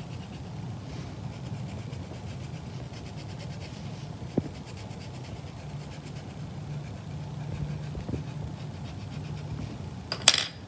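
Colored pencil shading on sketchbook paper: quick, faint back-and-forth scratching strokes over a low steady hum, with one sharp tick about four and a half seconds in.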